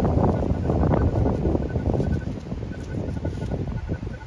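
Wind buffeting the microphone: a loud, uneven low rumble that swells and eases, easing slightly near the end.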